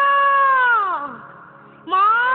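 A woman's voice holding one long, high, drawn-out note that falls in pitch and fades about a second in. A second drawn-out call starts, rising in pitch, near the end.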